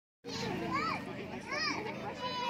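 Children's voices: excited exclamations rising and falling in pitch, starting a moment in, over a steady low hum.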